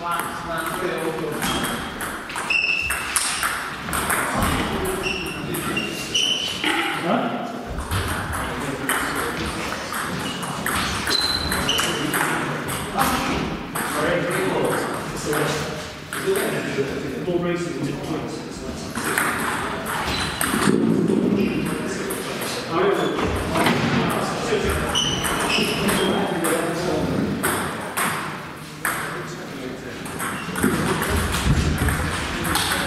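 Table tennis balls clicking and pinging off tables and bats at irregular intervals in a large hall, with people talking in the background.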